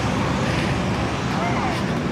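Steady rumble of street traffic on a wide road.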